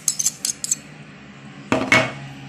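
Metal teaspoon clinking against a metal saucepan as sugar is spooned into milk: a quick run of light clinks in the first moment, then a louder clink with a short ring near the end.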